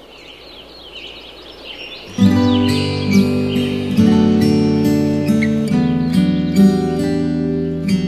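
Birds chirping faintly, then about two seconds in a strummed acoustic guitar tune starts and carries on steadily.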